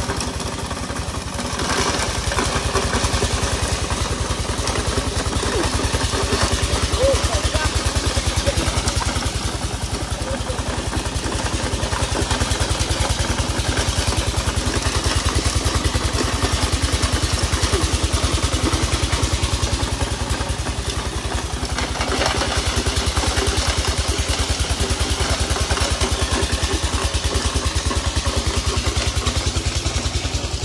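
A small engine running steadily at an even speed, its firing heard as a fast, regular low pulse throughout.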